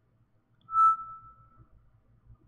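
A single bell-like chime: one clear tone that starts a little over half a second in and fades out over about a second.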